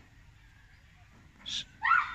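A child's short, high-pitched shout or squeal near the end, preceded a moment earlier by a brief hiss.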